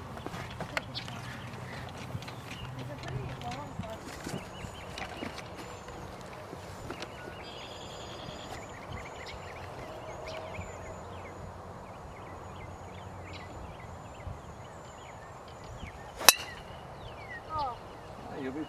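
A single sharp crack of a driver striking a golf ball off a tee, about sixteen seconds in, the loudest sound by far; before it only low outdoor background.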